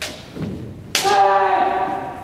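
A sharp crack of a bamboo shinai strike. About a second in comes another sharp hit and a long, steady kiai shout from a kendoka.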